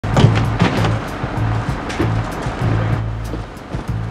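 Background music: a low bass line with sharp percussive hits.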